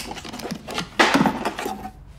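A wooden box is handled and a metal blade is taken out of it: a run of small knocks, clicks and scrapes of wood and metal, loudest about a second in.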